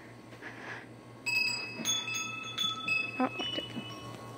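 Metal chimes ringing: several clear tones at different pitches struck one after another from a little over a second in, each ringing on.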